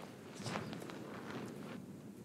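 Faint church room sound with a few soft footsteps and cloth rustles, the clearest about half a second in.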